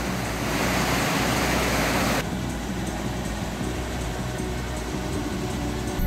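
Rushing whitewater of a small forest stream and waterfall: a steady hiss that turns suddenly quieter and duller about two seconds in.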